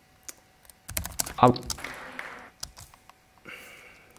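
Computer keyboard keys being typed: a few quick clicks about a second in, and another short run near the three-second mark.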